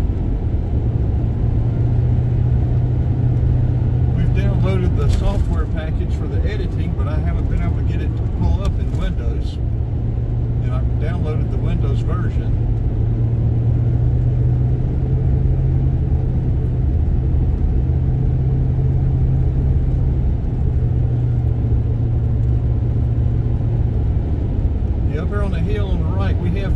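Inside a moving car: a steady low rumble of tyres and engine at road speed. Faint, indistinct talking comes through over it a few times.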